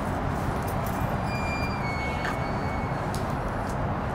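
Steady outdoor city street noise, a low rumble of traffic, with a faint high-pitched squeal from about one to three seconds in.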